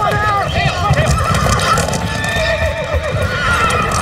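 Horses whinnying again and again over heavy hoofbeats in a dirt rodeo arena, with voices shouting.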